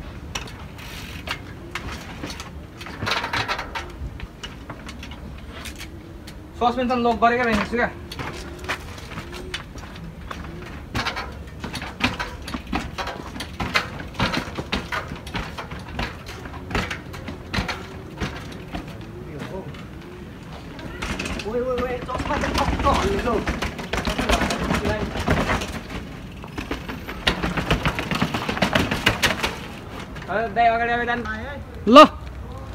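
A mountain bike being ridden up concrete steps: irregular knocks and clatter of the tyres and frame landing on the step edges. A laugh breaks in about seven seconds in, and voices come in near the end.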